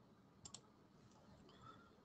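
Near silence broken by one short, faint double click about half a second in: a computer mouse button pressed and released.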